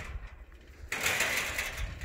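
A handler's drawn-out, hissing "shoo", a herding command urging the cowdog on toward the cattle; it starts about a second in and lasts about a second.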